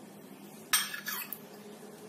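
Steel cup clinking against a steel plate once, about three-quarters of a second in, with a short ring and a couple of lighter taps after it, over a low steady hum.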